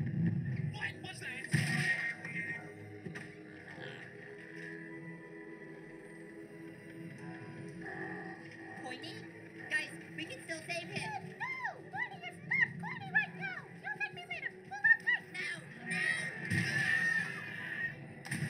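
Soundtrack of an animated web series episode: background music under cartoon character voices.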